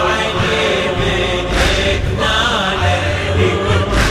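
Men's voices chanting a Shia latmiya in Iraqi Arabic, with a chorus and a deep bass backing.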